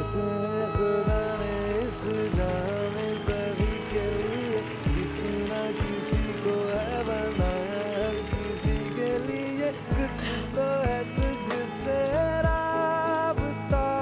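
Live ballad performance: a male voice singing with acoustic guitar accompaniment over a steady drum beat with cymbals.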